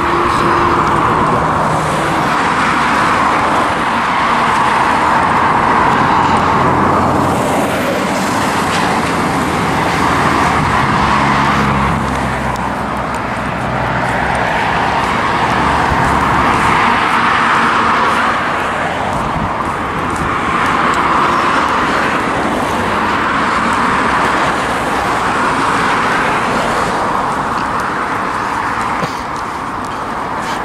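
Road traffic: cars passing one after another on a main road, their tyre and engine noise swelling and fading every few seconds.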